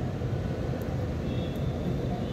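Steady low background rumble with no distinct events, its sound lying mostly in the low range.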